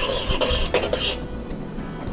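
A spoon stirring rice and water in a stainless steel pot, scraping and clinking against the pot through the first second or so, then softer.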